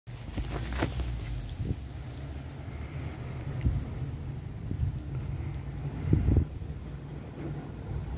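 Macaw's beak working at watermelon: a few scattered soft clicks and knocks over a steady low rumble of wind on the microphone.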